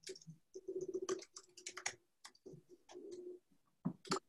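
Computer keyboard typing: quiet, irregular keystroke clicks with a quick run of keys about one to two seconds in, as a search query is typed. A faint low humming tone comes and goes underneath.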